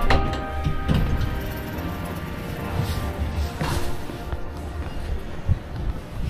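Background music playing over a low rumble, with a few short knocks, the clearest a little past halfway.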